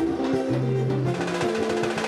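Live pagode band playing: percussion keeping a steady beat under a bass line, with cavaquinho and electric guitar.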